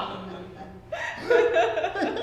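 Laughter in short vocal bursts, starting about a second in after a quieter moment.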